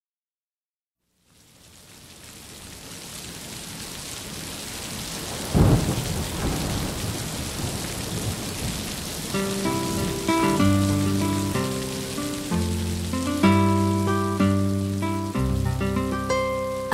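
A rain sound effect fades in after about a second of silence, with a single thunderclap about five and a half seconds in. About nine seconds in, soft melodic instrumental music joins over the steady rain: the opening of a children's song about rain.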